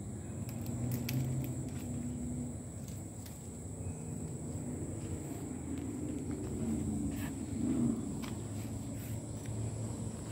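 Outdoor background: a steady, high-pitched insect drone over a low rumble, with a few faint clicks.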